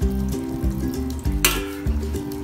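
Water poured into a hot pot of blue crabs in sauce, sizzling as it hits the pan, with a sharp knock about one and a half seconds in.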